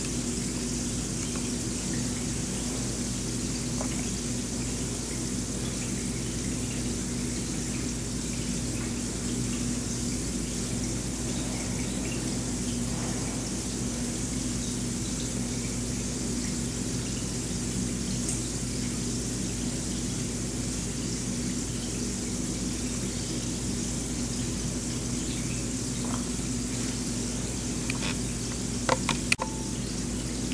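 Lush Rose Bombshell bath bomb fizzing and bubbling in a full bathtub, a steady soft sound like a small fountain, over a steady low hum. A couple of small knocks near the end.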